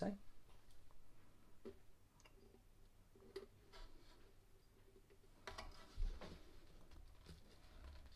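Faint handling sounds of a ukulele string being fed through a pull-through bridge hole and worked out of the sound hole by fingers: scattered light clicks and scrapes of string and hands on the wooden body, with a denser rustle and a knock about six seconds in.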